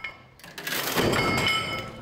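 A toothpick bridge collapsing under a stack of metal weight plates: about half a second in, the plates crash down and clatter onto the table, leaving a ringing metallic tone that fades out.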